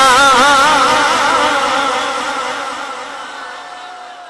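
A man's voice through a PA system, holding a long sung note with strong vibrato, which then fades away gradually over a few seconds.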